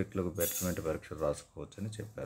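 A man talking, with a brief high hiss about half a second in.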